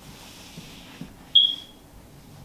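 A single short, high-pitched electronic beep about one and a half seconds in, fading away quickly, with a faint knock just before it.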